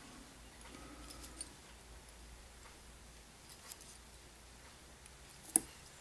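A few faint ticks from the fly-tying thread and bobbin being handled while wraps are put on at the fly's head, over a low steady room hum.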